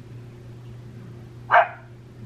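A single short bark about one and a half seconds in, over a low steady hum.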